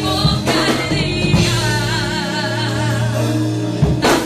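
Live gospel worship music: a singer with a wavering, vibrato voice over a band with steady bass and occasional drum hits, loud throughout.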